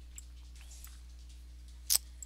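Faint clicks of a computer mouse over a steady low electrical hum, then one short, loud puff of noise near the end.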